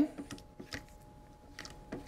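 Quiet, scattered light clicks and scrapes of a spatula pushing a wet herb mixture down inside a plastic food processor bowl, over a faint steady hum.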